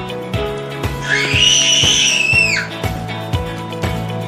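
Background music with a steady beat, and about a second in a toddler's high-pitched shriek that rises, holds and falls away over about a second and a half.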